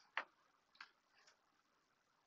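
A picture-book page being turned: a short papery click just after the start, then two much fainter ticks, otherwise near silence.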